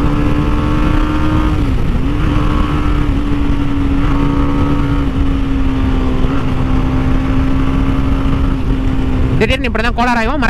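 Motorcycle engine running steadily as the bike cruises, with wind noise on the microphone. Its pitch dips briefly about two seconds in and then holds steady. A man's voice starts just before the end.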